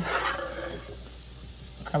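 A wooden spoon tipping garlic-butter sauce onto mussel shells in a glass baking dish: a brief wet spatter that fades within about half a second, then only a faint low hum.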